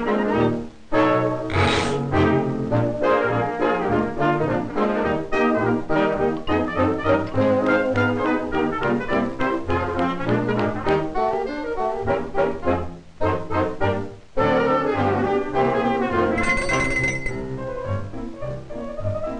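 Lively brass-led orchestral cartoon score, with trombone and trumpet to the fore, breaking off briefly near the start and twice near the middle. A short noisy burst sounds about two seconds in.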